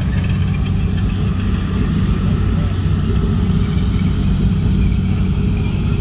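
M18 Hellcat tank destroyer with its nine-cylinder radial engine running as it drives along and down into a trench: a loud, steady low drone.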